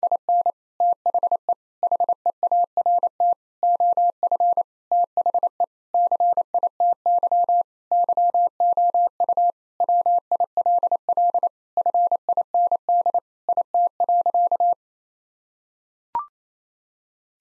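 Morse code at 28 words per minute, a single steady electronic tone keyed in dots and dashes, spelling out "In the heart of the city you will find it". The sending stops about a second before the end.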